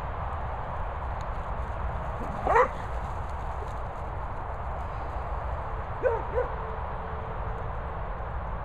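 A dog barking: one loud, rising bark about two and a half seconds in and two shorter barks about six seconds in, over a steady low rumble.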